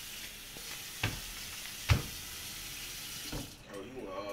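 Kitchen tap running into a steel sink with a steady hiss that cuts off about three and a half seconds in. Two sharp knocks about a second apart, the second louder.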